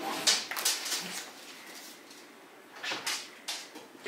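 Two small dogs sniffing and licking at a raw meat bone held out by hand, in a few short bursts during the first second and a half and again about three seconds in.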